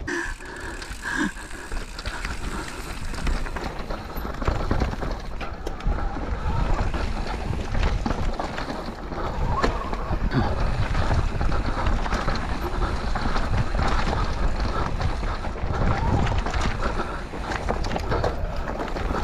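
Intense Tazer MX electric mountain bike riding down rough forest singletrack: the tyres roll and rattle over dirt, roots and rocks with constant clattering. Wind noise on the microphone runs through it.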